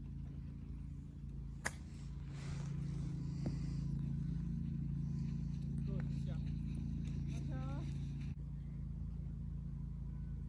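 A golf club striking the ball on a chip shot: one sharp click about two seconds in, over a steady low hum.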